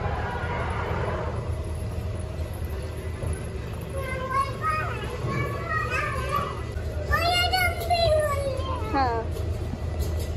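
Children's high voices calling out in a play area, over a steady low background hum. A run of rising and falling calls is loudest in the second half.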